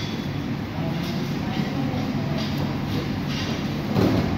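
Steady low rumble of an indoor wrestling training hall, with indistinct voices and faint scuffling of wrestlers grappling on the mats.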